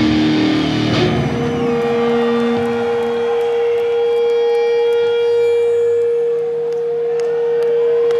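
Live electric guitar solo. A lower note dies away about a second in, then a single high note is held and sustained to the end, its overtones growing as it rings.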